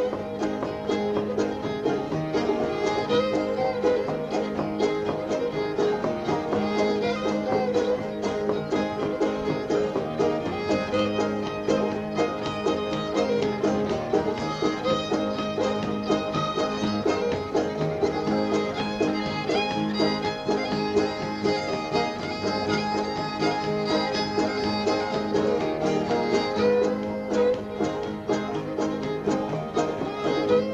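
An old-time fiddle tune played on fiddle with banjo and guitar accompaniment, running without a break.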